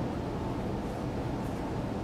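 Steady low rumbling room noise with no distinct event.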